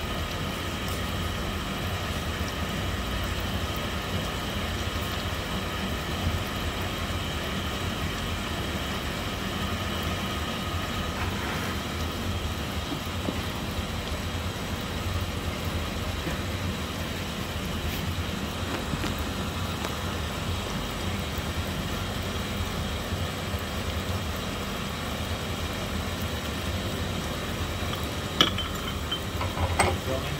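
Sunnen pin-fitting hone running with a steady electric-motor hum and faint whine. A single metallic clink comes near the end.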